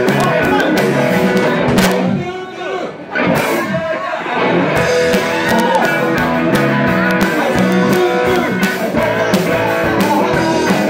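Live rock band playing: electric guitars, bass guitar and a drum kit, with a male singer at the microphone. About two seconds in the cymbals and drums drop back briefly, then the full band comes back in.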